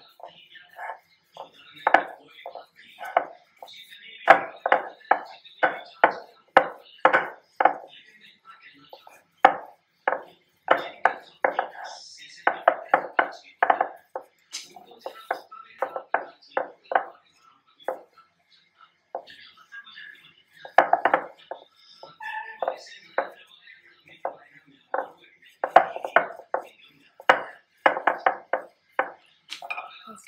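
Dough being rolled out with a wooden rolling pin on a stone pastry board and then worked by hand: a run of quick knocks and thuds, about two or three a second, broken by short pauses.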